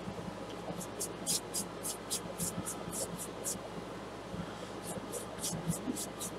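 Paintbrush stroking across wet watercolor paper: a soft, scratchy swish repeated about four times a second, pausing for about a second past the middle, then starting again.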